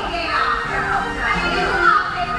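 Many voices, children's among them, chattering and calling over one another in a crowd, with music underneath.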